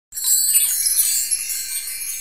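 A bright shimmer of many high chimes ringing together, starting suddenly and slowly fading.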